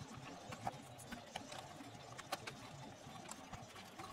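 Faint, irregular clicks and rustling as multi-pin wire-harness plugs are handled and pushed back onto their circuit-board connectors.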